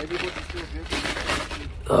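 Rustling and handling noise on a phone's microphone as the phone is moved about, with a few faint murmured voice fragments near the start and a short voiced 'oh' at the very end.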